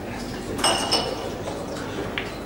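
Two quick ringing clinks about a third of a second apart, over low background chatter.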